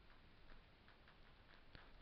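Near silence with a few faint ticks from a stylus writing on a tablet.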